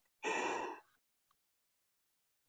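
A person's breath or sigh into a microphone, heard once for about half a second through the voice-chat stream.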